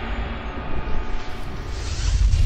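TV show transition sting: a whooshing sweep over deep bass that rises higher near the end, following the segment's music.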